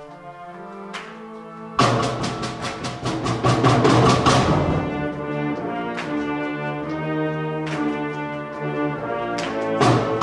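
Concert band playing: a soft sustained brass chord, then about two seconds in a sudden loud full-band entrance with a quick run of struck percussion notes. It settles into sustained chords with a single struck note every second or two.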